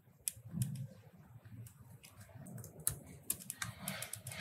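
Computer keyboard keys being pressed: a few separate clicks, then a quicker run of keystrokes near the end.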